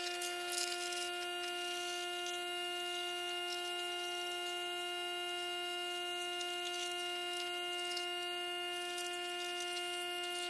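A steady, unchanging tone with even overtones, like a held drone, over a faint hiss. It cuts off suddenly just after the end.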